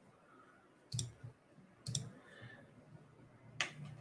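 Three short, sharp clicks over faint room tone: two about a second apart, the third near the end.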